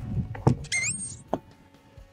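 Handling sounds from a boat's deck storage compartment being shut: low rumbles and a knock about half a second in, a short rising squeak, then another knock just after a second in.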